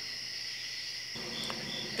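Chorus of night insects, crickets, making a continuous high-pitched trilling; a faint low hum joins a little past a second in.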